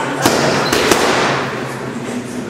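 Punches landing on a trainer's boxing focus mitts: two sharp smacks about two-thirds of a second apart, over steady background noise.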